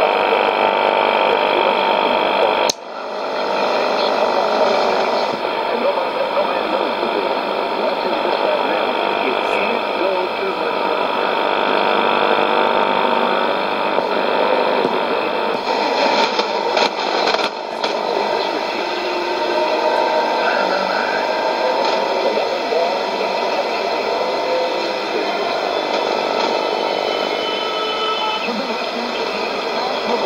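Shortwave radio reception of a weak AM broadcast on 4840 kHz through a Sony ICF-2001D: a faint voice buried in steady static and hiss, with steady whistles, on a 30 m long-wire antenna. The signal cuts out briefly about three seconds in, and there is a burst of crackle around the middle.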